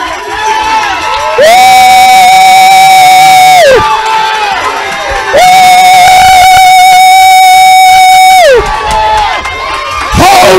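A congregation praising aloud, broken by two long, very loud held shouts from one voice. Each swoops up into a steady high note, holds it for two to three seconds, then falls away. The shouts are loud enough that the recording clips on them.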